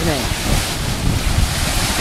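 Wind buffeting the microphone over the rush of the sea as the sailboat's bow cuts through the water under sail.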